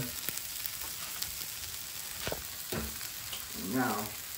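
Shrimp fried rice sizzling steadily in a nonstick skillet on a gas burner, with a few faint taps.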